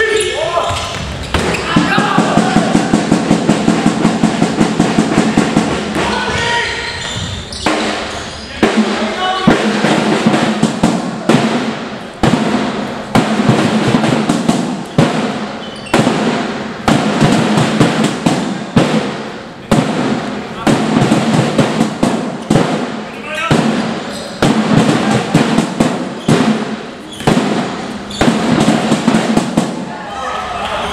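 Sounds of an indoor handball game in an echoing sports hall: voices calling and shouting, the ball bouncing and slapping, and sharp knocks throughout. Early on comes a run of rapid, even beats, about four a second.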